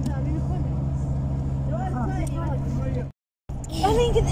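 Vehicle engine running with a steady low hum, faint voices over it. The sound cuts out completely for a moment about three seconds in, then resumes.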